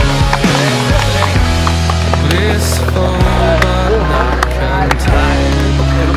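Skateboard wheels rolling and the board knocking against a makeshift plywood ramp, with a few sharp knocks, over loud music with a steady bass line.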